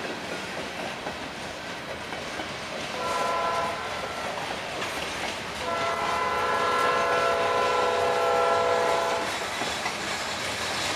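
Norfolk Southern freight cars rolling past with a steady rumble and clatter of wheels on rail. A multi-note locomotive air horn sounds a short blast about three seconds in, then a longer, louder blast of about three and a half seconds.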